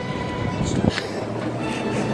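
Escalator running: a steady mechanical rumble with a faint hum.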